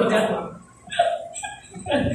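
Laughter: a burst of laughing that trails off, followed by a couple of short chuckles.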